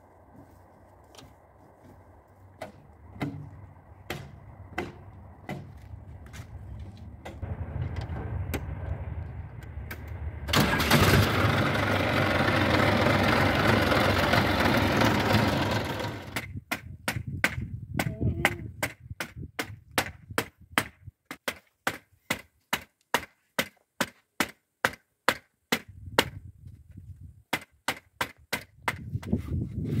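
A New Holland 4010 tractor's diesel engine starting: a low rumble builds, then about ten seconds in it runs loud for some five seconds. After that comes a long series of sharp, evenly spaced knocks, about two a second.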